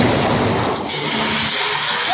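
Loud, dense music that cuts in abruptly just before, with a noisy wash over it.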